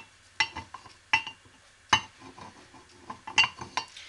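Small steel parts clinking as Kydex rivet dies are handled and set into an arbor press plate: several sharp metallic clinks, irregularly spaced, each with a brief ring.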